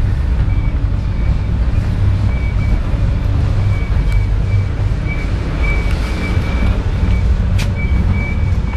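Steady low rumble inside a moving passenger train carriage, with a high thin squeal that comes and goes in short dashes and a single sharp click near the end.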